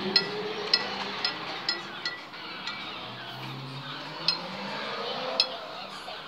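Sharp metallic clinks, about eight at irregular intervals, each with a short bright ring, over a steady murmur of street and crowd noise.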